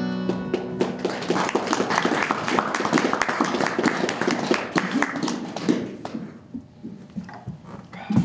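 The last acoustic guitar chord dies away, and an audience applauds. The clapping thins out and stops about six or seven seconds in.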